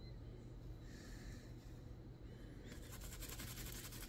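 Cloth of a shirt being scrubbed against itself by hand, a fast run of short rubbing strokes starting a little before three seconds in, over a faint low hum. It is the hand-scrubbing used to work melted crayon wax out of the fabric.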